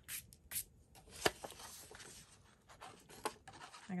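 Paper being pressed and smoothed down by hand on a tabletop while gluing: soft rubbing and rustling, with a sharp tap about a second in and a fainter one near the end.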